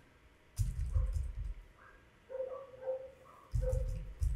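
Typing on a computer keyboard: a run of keystrokes, a pause, then another run near the end.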